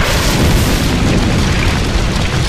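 Cars burning in a large fire: a loud, steady roar of flames with a deep rumble.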